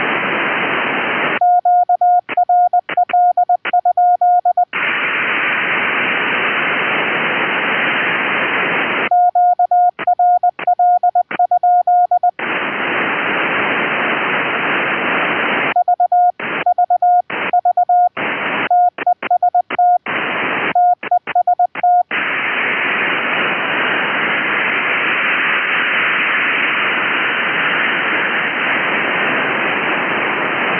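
Morse code keyed at 20 words per minute from a computer keyer through an Elecraft K3 transceiver: a steady tone of about 700 Hz sent in three runs, spelling out QRL, VVV and TEST TEST. The radio's receiver hiss cuts out during each run and returns between them.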